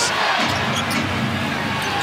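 A basketball being dribbled on a hardwood arena court under a steady din of crowd noise.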